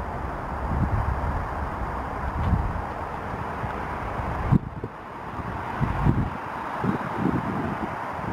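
Wind buffeting the camera microphone in irregular low rumbling gusts over a steady outdoor hiss, with a brief click and dip about halfway through.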